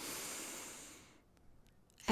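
A woman's deep breath in through the nose: a quiet, breathy hiss lasting about a second that fades away.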